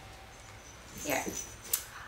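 Quiet room tone, broken about a second in by a woman's short "yeah" and a brief click just after.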